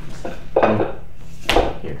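A hand and forearm working against a Wing Chun wooden dummy's wooden arms, with one sharp knock of contact about one and a half seconds in.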